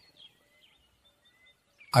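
Faint birds chirping in the background: a scatter of short, thin, high chirps and whistled notes in an otherwise quiet pause.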